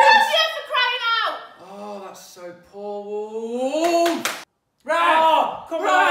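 A few people exclaiming in excitement, with no clear words: short shouts, a long drawn-out rising 'ooh', a sharp slap of hands about four seconds in, then a loud cheer near the end.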